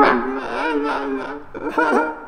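A wordless human voice making drawn-out sounds that waver in pitch, in two long phrases with a short break about one and a half seconds in.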